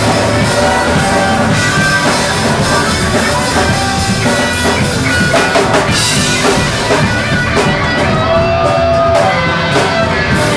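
Live rock band playing loudly: electric guitars over a drum kit, an instrumental passage with no singing.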